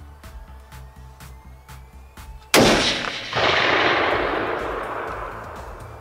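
A single rifle shot about two and a half seconds in, sudden and much louder than anything else, followed by a long rolling echo that swells again just under a second later and dies away over about three seconds. Background music with a steady beat runs underneath.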